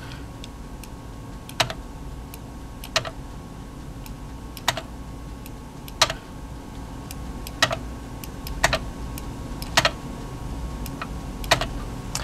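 Isolated sharp clicks from the keyboard and mouse of a Xerox Dorado workstation, about eight of them at irregular intervals of a second or so, as eighth rests are inserted one after another into a score. A steady low hum runs underneath.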